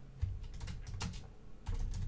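Computer keyboard being typed: an irregular run of key clicks, with low thumps about a quarter second in and again near the end.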